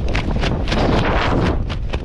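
Wind rushing and buffeting over a small action-camera microphone during a parachute descent under an open canopy, loud and uneven.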